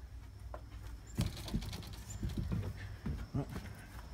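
Footsteps: a run of irregular, soft footfalls starting about a second in and lasting about two seconds, as a person steps out of a camper trailer and walks on grass, over a low steady rumble of wind or handling noise on the microphone.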